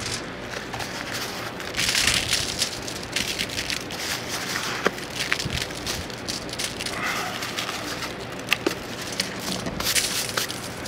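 Crumpled aluminium foil crinkling and crackling as gloved hands scatter clumps of brown sugar over it, in irregular rustling handfuls with a few sharp taps.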